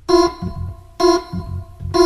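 Opening bars of an early-1960s jazz Hammond organ instrumental: held organ chords struck about once a second, with bass notes between them.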